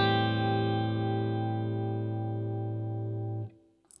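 Electric guitar letting an A minor 7 chord (open A, fretted D, open G, fretted B and the G note on the high E string) ring out, slowly fading, until it is muted sharply about three and a half seconds in.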